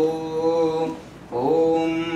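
A man chanting Sanskrit verses in a slow, melodic recitation: two long held notes with a short pause for breath about halfway through.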